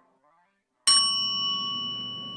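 Near silence, then a little under a second in a sudden bright ding: the chime sound effect of a subscribe-button animation, ringing on with a few clear tones and slowly fading.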